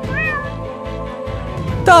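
A cat's meow, short and rising then falling, just after the start, over background music with long held notes.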